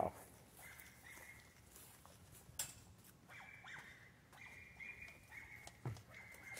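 Faint animal cries, a few thin, drawn-out high calls, with a single knock or footstep about two and a half seconds in.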